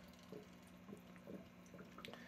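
Near silence: a faint steady hum with a few soft, short bubbling blips, typical of an aquarium air pump driving an air stone.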